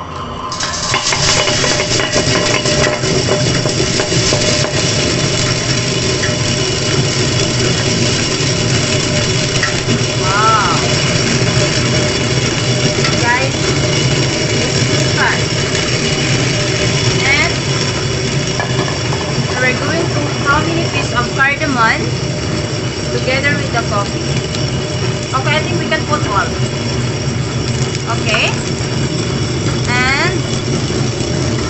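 Tabletop stone wet grinder running steadily, its stone rollers turning in a stainless-steel drum as roasted coffee beans are poured in and crushed. The whirring is loud and even and begins about half a second in. From about ten seconds in, short high squeaks come over it every second or two.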